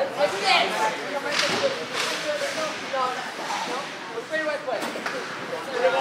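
Overlapping, indistinct chatter from a group of people talking at once.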